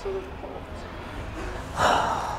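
A man's short, sharp breath, a gasp or huff, near the end, over quiet outdoor background.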